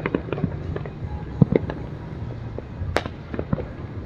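Fireworks going off: an irregular scatter of sharp pops and bangs over a low rumble, the loudest bang about three seconds in.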